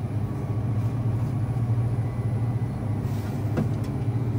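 Steady low hum of a refrigerated drinks cooler's machinery, with one light click shortly before the end as the cans on the shelf are touched.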